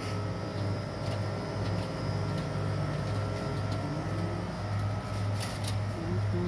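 Steady low hum of a shop's background noise, with a faint high steady tone and a few light clicks, two of them close together near the end.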